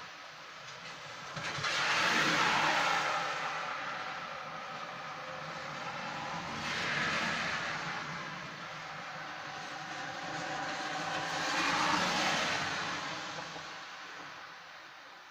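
Three vehicles passing one after another on a rain-wet road, each a swell of tyre hiss that rises and falls away; the first, about two seconds in, is the loudest.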